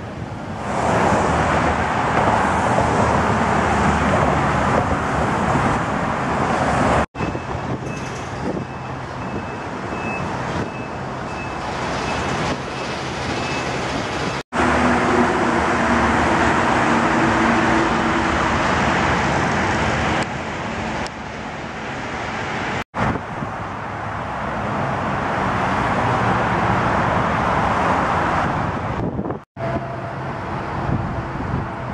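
Steady road traffic noise with a low rumble, broken off abruptly three or four times where one recording is cut to the next.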